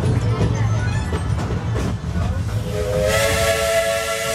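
Steam locomotive whistle sounding a chord of several tones, with a hiss of steam. It starts about two-thirds of the way in with a slight upward slide and is still blowing at the end, over the steady rumble of the passenger car rolling on the track.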